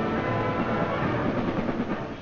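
Concert band music with many held notes sounding together, fading out near the end.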